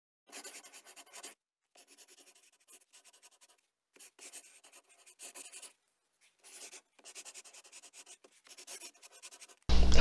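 Pencil scratching across paper in quick sketching strokes, in bursts of about half a second to a second and a half with short pauses between.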